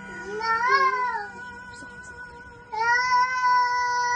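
Toddler singing in a high, thin voice: a short phrase that rises and falls about half a second in, then a long held high note from near the three-quarter mark.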